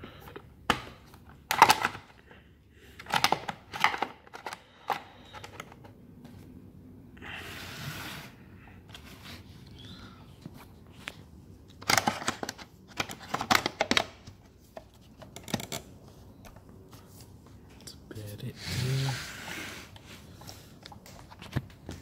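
Irregular plastic clicks and knocks as the orange top cover of a Stihl MS180 chainsaw is fitted back on and the saw is handled, with two short rustling noises.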